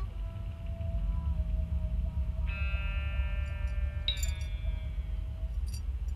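Ambient electronic music: a long held tone over a low rumble, joined about halfway through by a sustained chord. Near the end a tone glides downward, with faint chime-like ticks.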